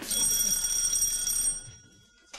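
Electric doorbell ringing for about a second and a half, then fading out.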